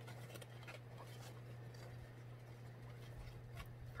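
Faint rustling and a few light taps of small craft supplies (embroidery floss and fabric) being handled and packed into a fabric project bag, over a steady low hum.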